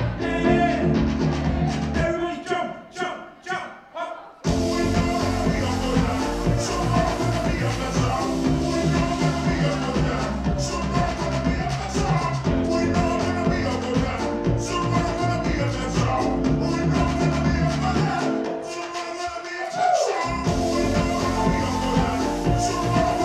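Live electronic indie-pop music with a man singing. The bass and beat drop out about two seconds in and come back all at once at about four and a half seconds; the low end drops out again briefly near the end before returning.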